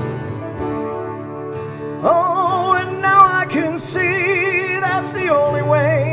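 A live acoustic band plays a slow song on strummed acoustic guitars and piano. About two seconds in, a man's voice comes in singing the melody with vibrato.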